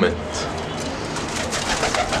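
Domestic pigeons cooing.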